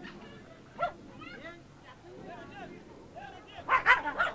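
A dog barking and yipping in short repeated calls, loudest in a burst near the end.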